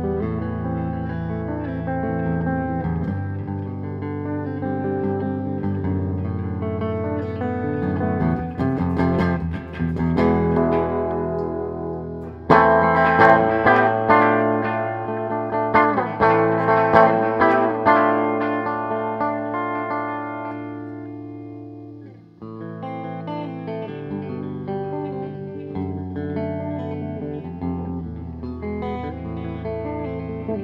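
Tom Anderson Bobcat Special electric guitar played with a clean tone on its humbucker-sized P-90 neck pickup, with ringing chords and single notes. Near the middle a louder, harder-picked passage rings out and slowly fades. After a brief near-stop, softer playing resumes.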